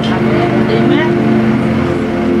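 A steady, loud droning tone made of several held pitches, with a few faint voice sounds around the middle.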